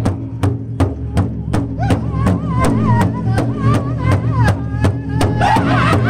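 Powwow drum group beating a large hide drum together with padded drumsticks in a steady beat of nearly three strokes a second. A high, wavering lead voice comes in about two seconds in, and more voices join in near the end.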